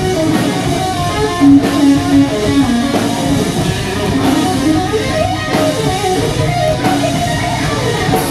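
Heavy metal band playing live: an amplified electric guitar plays a run of melodic notes over drums, with no vocals.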